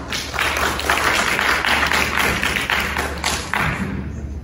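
Congregation applauding after a choir anthem: many hands clapping, fullest in the middle and dying away near the end.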